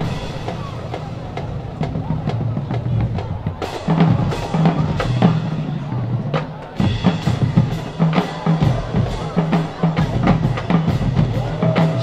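Marching band drumline playing a cadence, with sharp snare hits over bass drums. It is sparse at first and settles into a steady beat about four seconds in.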